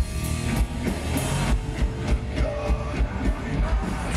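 Live rock band playing loud, with a steady drum beat under the guitars and the rest of the band.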